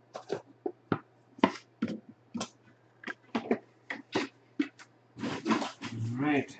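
Hands handling a wooden card box, making a run of short, irregular clicks and taps, with a short rushing noise in the last second.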